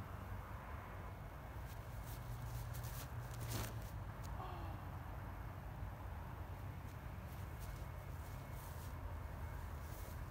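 Quiet open-air ambience with a steady low rumble, broken by a single short knock about three and a half seconds in.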